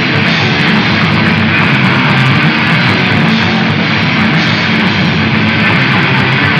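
Grunge rock band playing live at full volume: heavily distorted electric guitar, bass guitar and drum kit together in a dense, unbroken wall of sound.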